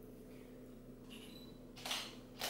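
Camera shutter: a faint short high beep a little past a second in, then a single sharp click near the end.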